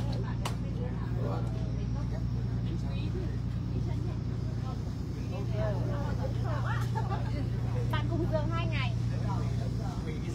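A boat's engine running with a steady low drone, with people talking in the background, the voices louder in the second half.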